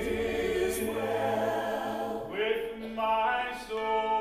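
A man singing a slow sacred song solo over instrumental accompaniment, holding long notes and moving between pitches.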